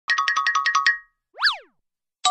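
Cartoon intro sound effects: a quick run of about nine short, bright notes lasting under a second, then a single whistle that swoops up and falls back down.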